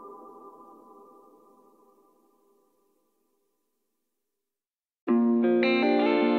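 A song's last chord fading out to silence over the first two or three seconds. After a couple of seconds of silence, the next song starts abruptly about five seconds in with sustained guitar chords.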